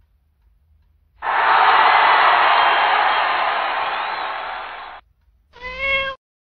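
A loud hissing noise that starts abruptly, fades over about four seconds and cuts off, then a short meow near the end.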